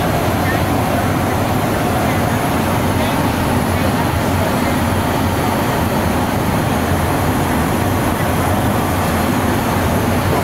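Steady cabin noise inside a Yakovlev Yak-40 airliner in cruise: the even drone of its three rear-mounted Ivchenko AI-25 turbofan engines mixed with airflow over the fuselage.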